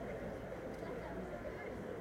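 Indistinct, distant voices over a steady outdoor background hum, with no clear words.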